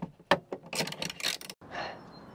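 A few sharp clicks, then about a second of rapid clattering and clicking from work on the ceiling fittings, cut off suddenly.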